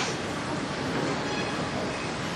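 A steady, even rushing noise with no clear pitch, filling the pause between a man's sentences.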